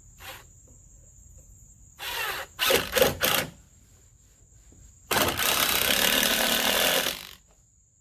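Ryobi cordless drill driving screws into wooden floor framing. It runs in a few short spurts, then in one steadier run of about two seconds near the end.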